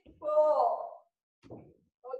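A woman's short, loud vocal call with a falling pitch, followed by a brief softer breathy sound about a second and a half in.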